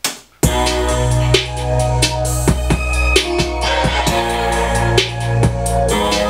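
Playback of a self-produced hip-hop track's drop: a trap drum-machine beat over a sustained 808 bass and synth chords. After a short click, it comes in suddenly about half a second in.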